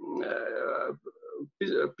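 A man's voice holding a drawn-out hesitation sound, a filled pause like 'ээ', for about a second, followed by a short quieter murmur before speech resumes near the end.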